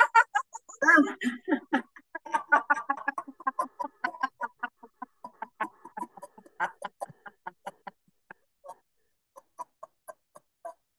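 A woman laughing loudly in rapid ha-ha pulses, pushing the laughter out on one long exhalation until the breath runs out: a laughter-yoga exercise. The laughter thins out about seven seconds in, leaving a few short, scattered bursts near the end.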